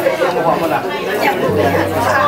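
Many people talking at once: crowd chatter in a large hall. A steady low hum sets in about one and a half seconds in.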